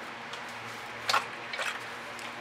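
Emptied paint dish tossed into a bucket: one short clatter about a second in, followed by a few softer knocks.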